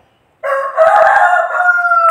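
A rooster crowing once: a single long crow that starts about half a second in and dips slightly in pitch toward its end.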